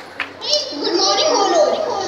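Children's voices: after a brief lull, a high-pitched shout about half a second in, followed by overlapping talk.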